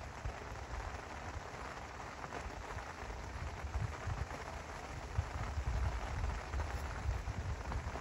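Steady rain falling, heard as an even hiss, with an uneven low rumble that grows stronger about halfway through.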